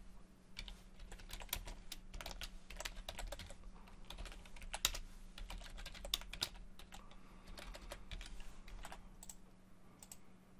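Computer keyboard being typed on: quick, irregular keystrokes, thinning out over the last few seconds.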